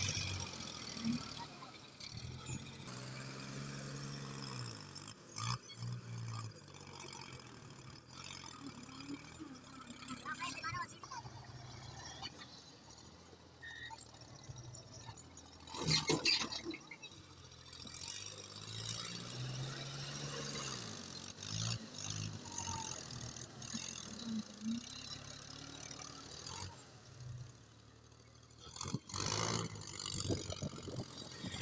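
Ford 4000 tractor's diesel engine running and revving up and back down twice as the front-end loader works. About halfway through there is a loud rush as soil pours from the loader bucket into a trolley.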